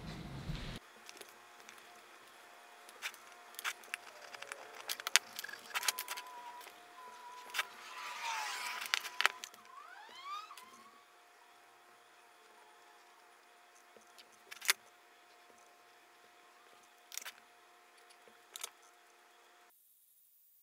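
Sparse light clicks and taps as a digital caliper's steel jaws and a steel bar are handled on a bench, with a short scratching stretch about eight seconds in as a marker draws lines. A faint wavering whistle-like tone sounds underneath in the middle.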